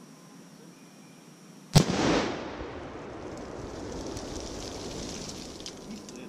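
A Tannerite binary exploding target detonates with one sharp blast about two seconds in, followed by a long rumbling echo that fades over several seconds.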